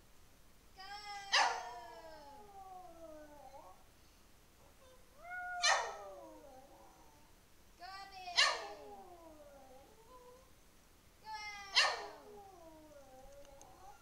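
Lhasa Apso howling ("singing"): four drawn-out howls a few seconds apart, each peaking sharply and then sliding down in pitch.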